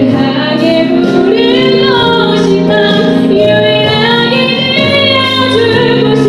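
A young woman singing a worship song solo into a handheld microphone, over held instrumental accompaniment.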